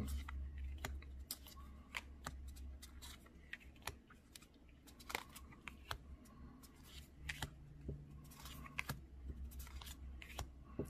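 Tarot cards being slid off a stack and set down one after another by hand, making faint, irregular clicks and snaps of card stock over a low room hum.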